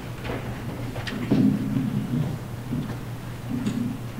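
Irregular low rumbling and a few sharp clicks from a live microphone being handled and carried on its stand, over a steady low electrical hum.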